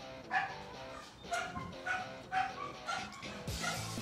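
Several short dog barks in quick succession, about two a second, over background music.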